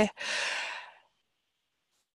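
A woman's audible breath between phrases, a soft rush of air that fades out about a second in, followed by silence.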